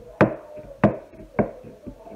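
A bamboo skewer being jabbed into pieces of lime-soaked pumpkin, giving four sharp taps about 0.6 s apart, each with a short ringing tail. The pricking lets the sugar soak into the pumpkin.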